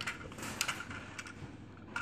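Small plastic toy building pieces clicking and clattering as hands fit them onto a toy truck: a few light, irregular clicks, most of them in the first second.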